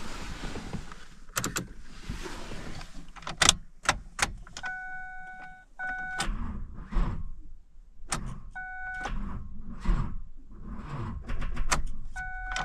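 2010 Ford Ranger on a battery run down by the cold: the key is turned and the starter tries to turn over but only clicks, with several sharp clicks. The dashboard warning chime beeps in short runs, about three times.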